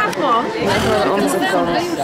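People chatting, their voices overlapping.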